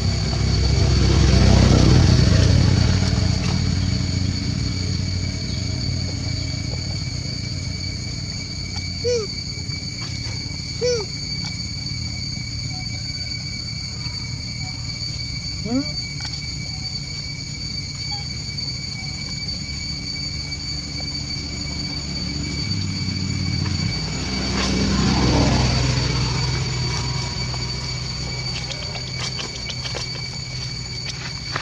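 Outdoor background noise: a steady low rumble that swells twice, near the start and again about three-quarters of the way through, under a steady high whine. A few short, bending squeaks come around the middle.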